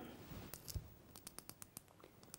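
Pencil being twisted in a small handheld pencil sharpener, the blade shaving the wood in a quick run of faint clicks that starts about half a second in.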